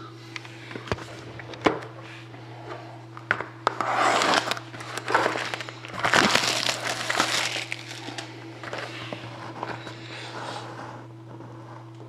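Plastic shrink wrap on a hockey card box being cut and pulled off, crinkling in bursts that are loudest about four and six seconds in, after a couple of sharp clicks in the first two seconds. A steady low hum runs underneath.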